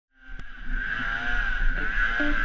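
Polaris snowmobile engine running with a steady high whine as the sled ploughs through deep powder snow, fading in just after the start.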